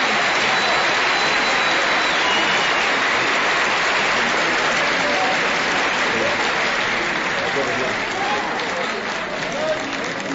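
Concert audience applauding, with scattered voices calling out. The applause fades a little over the last couple of seconds.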